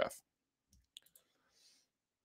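A faint computer mouse click about a second in, in otherwise near silence.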